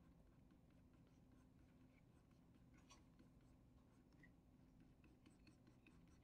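Near silence: faint room tone with a low steady hum and a few very faint ticks.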